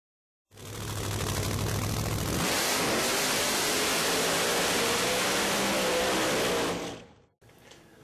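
A car engine revving: a low, steady run for the first couple of seconds, then its pitch climbs about two and a half seconds in and holds high under a thick rush of noise, fading out about seven seconds in.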